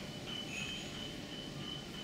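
Steady indoor background noise, room tone, with a faint thin high-pitched whine setting in just after the start and holding steady.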